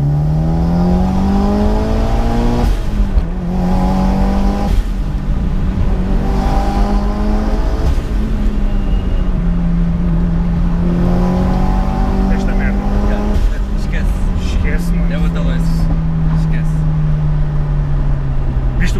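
Mitsubishi Lancer Evo VIII's turbocharged four-cylinder engine heard from inside the cabin. It pulls up through the revs for a couple of seconds, drops sharply at a gear change, then runs at fairly steady revs with a few small rises and falls. Several sharp clicks come near the end.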